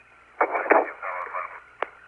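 Apollo air-to-ground radio: a faint, indistinct voice comes through the thin, telephone-like radio link over static, with a single sharp click near the end.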